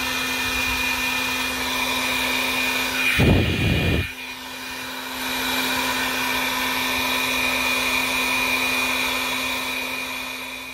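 Handheld Milwaukee electric heat gun running steadily, its fan blowing hot air to shrink heat-shrink spade connectors on the wiring. A brief louder rumble comes about three seconds in, and the sound starts to fade near the end.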